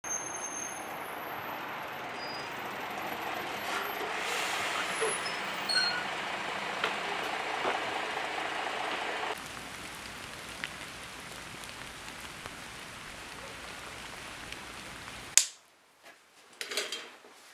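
City bus running at a stop, a steady rush of engine and air noise with scattered small clicks. The noise drops to a lower level about nine seconds in, and a single sharp knock comes just before the end.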